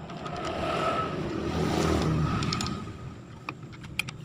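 A motor vehicle passing by, its sound swelling over the first second and fading away by about three seconds in. A few light metallic clicks come near the end as the gearbox gears are handled.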